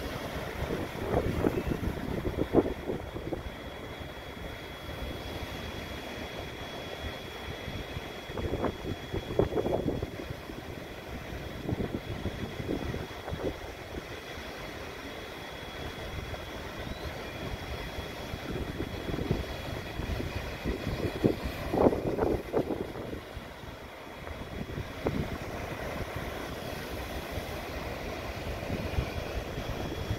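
Strong wind buffeting the microphone in gusts: a low, rough noise that swells into louder blasts about a second in, around nine seconds and around twenty-two seconds.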